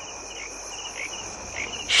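Crickets chirping: a continuous high trill with short chirps repeating about every half second.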